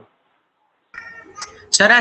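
Complete silence for about the first second, then a faint brief sound, then a voice starts speaking loudly near the end.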